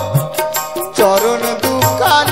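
Live Baul folk music: a melody with sliding, scooping notes over steady held tones, with regular hand-drum strokes about four or five a second.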